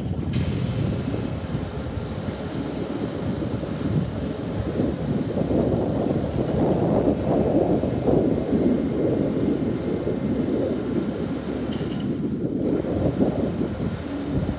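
Engine of an International garbage truck with a Heil Durapack 5000 body running as the truck rolls slowly closer, growing gradually louder. Gusts of wind buffet the microphone throughout.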